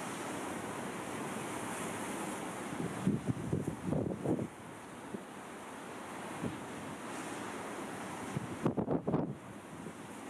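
Wind on the microphone: a steady rush, with gusts buffeting the microphone about three to four and a half seconds in and again near the end.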